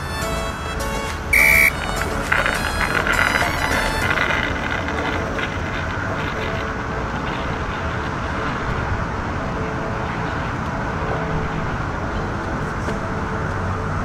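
Background music for the first four seconds, with a short loud beep about one and a half seconds in. After that, a steady rushing noise of strong wind on the microphone.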